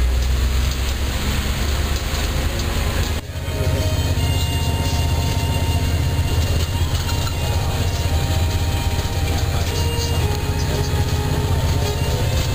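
Tateyama Highland Bus heard from inside the cabin while driving, a steady low rumble of engine and road noise. It breaks off briefly about three seconds in and then carries on.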